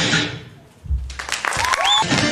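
Guitar-backed dance music fading out, then after a brief lull an audience bursts into applause about a second in, with a low thump as it starts and a rising cheer or whoop near the end.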